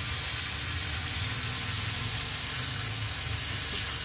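Long beans, tomato and spice paste sizzling steadily in hot oil in a non-stick pan on a high flame, just after a splash of water has been added, while a silicone spatula stirs through it.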